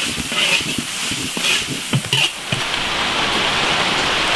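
Metal ladle scraping and knocking against an iron wok as stir-fried shredded pork is scooped out, several sharp clinks over the first two and a half seconds. After that only a steady, even hiss of rain remains.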